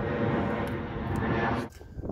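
Airplane engine drone overhead, steady and loud, cut off suddenly near the end.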